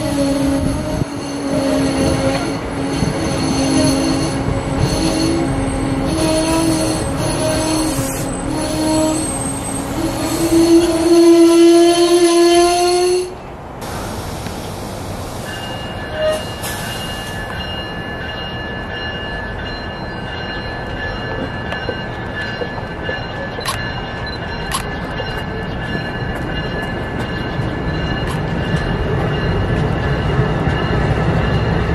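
Amtrak passenger train of stainless-steel Amfleet coaches rolling past. A low pitched tone with overtones sounds through the first half and steps up in pitch, then cuts off suddenly about 13 seconds in. A steady high whine follows, with a few sharp clicks of wheels over the rails.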